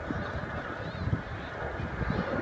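Geese honking a few times over a low, gusting rumble of wind on the microphone.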